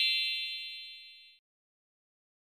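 A bright, bell-like chime sound effect rings out and fades away, dying out about one and a half seconds in and leaving silence.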